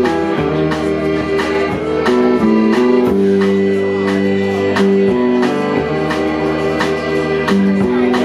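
Live band playing an instrumental passage: electric guitars and a piano accordion holding chords over a drum kit's steady beat of about two hits a second.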